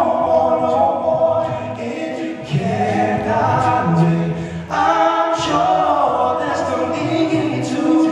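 Male a cappella group singing close harmony through microphones, a lead voice over backing harmonies and a sung bass line, with no instruments.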